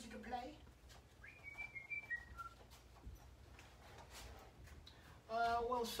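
Someone whistling a short run of clear notes, a held high note and then two lower ones, the last falling off. Speech starts near the end.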